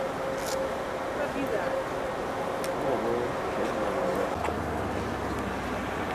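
Steady outdoor background noise with indistinct voices. A low hum comes in about two-thirds of the way through.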